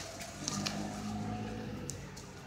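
Shop room tone: a steady low hum with a few faint taps about half a second in and near the end.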